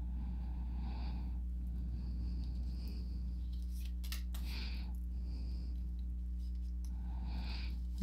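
Oracle cards being shuffled by hand and a card slid out onto a table. The soft papery swishes come and go several times, with a few light clicks near the middle, over a steady low hum.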